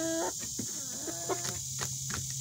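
Hens calling: a drawn-out call tails off just after the start and a shorter one comes about a second in. Between and after the calls come sharp clicks of beaks pecking feed pellets from a plastic feeder.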